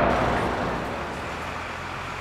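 City street ambience: a steady wash of traffic noise that eases off slightly over the two seconds.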